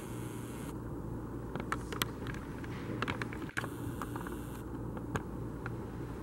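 Steady room noise with a low hum, broken by a few faint clicks.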